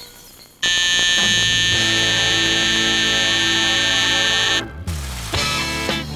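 An electric alarm clock's buzzer sounding loud and steady for about four seconds, starting suddenly and cut off abruptly.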